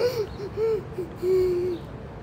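A woman crying: a few short, high, pitched sobs, then one longer held sob.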